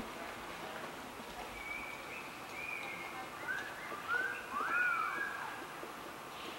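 Small birds chirping faintly: a scattered series of short, high calls, some flat and some rising and falling, starting about a second and a half in, over low background noise.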